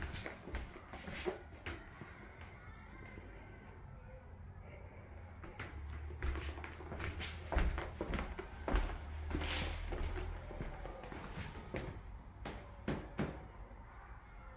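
Footsteps and scattered knocks and clicks from a handheld camera being carried through the rooms, with a low handling rumble from about halfway through for several seconds.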